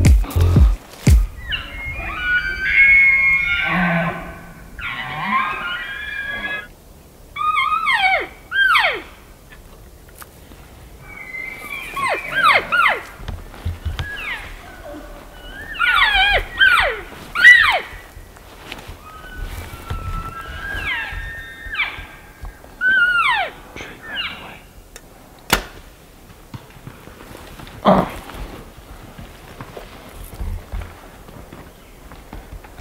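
Bull elk bugling, several calls a few seconds apart: high whistled notes, each followed by a run of sharp falling chuckles. A couple of sharp knocks come near the end.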